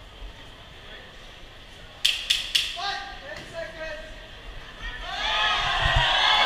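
Three sharp smacks in quick succession about two seconds in, kickboxing blows landing, followed by a few shouts and then crowd voices swelling loudly near the end.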